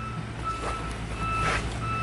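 Vehicle reversing alarm beeping: one high tone repeating roughly every three-quarters of a second, over a steady low engine rumble.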